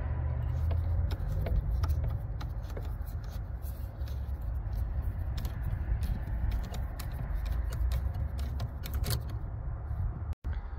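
Flat screwdriver turning the worm screw of a metal hose clamp on the air intake tube, a run of small irregular clicks that stop near the end, over a steady low rumble.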